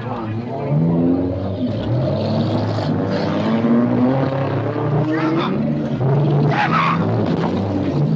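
Race car's engine heard from inside the cabin, its pitch rising and falling with the throttle, with two brief rasping bursts a little past halfway.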